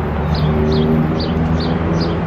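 Street traffic with a vehicle engine idling in a low, steady hum, and a short high chirp repeating evenly about two to three times a second.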